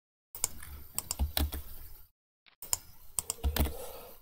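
Computer keyboard being typed on, irregular key clicks with a short pause about two seconds in.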